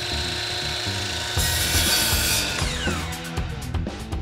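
Intro jingle with a beat, laid over a circular-saw sound effect cutting wood. The saw grows loudest in the middle, then its whine falls away.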